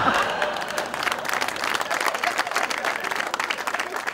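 Studio audience applauding: many hands clapping in a dense, steady patter.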